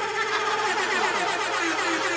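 Electronic music sound effect from the event DJ, a dense layered burst of tones that cuts in abruptly and holds steady, played as a sting after a punchline.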